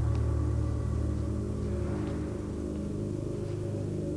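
Suspenseful background score: a low, sustained droning chord that eases slightly in level.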